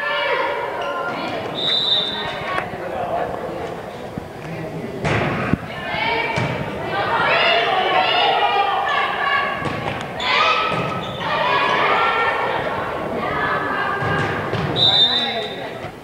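Many voices of spectators and players shouting and cheering in an echoing gymnasium during a volleyball rally, with ball hits as thuds about five seconds in. A short referee's whistle blast sounds about two seconds in, and another near the end, before the next serve.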